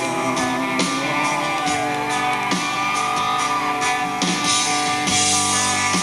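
Live rock band playing an instrumental passage between vocal lines: guitars over drums, with repeated cymbal hits.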